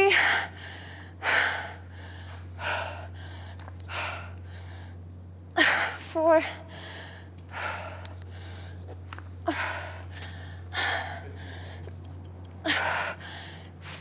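A woman breathing hard and forcefully under exertion during one-legged pistol squats, with a sharp breath about every second and a half. About six seconds in there is a short strained, voiced grunt.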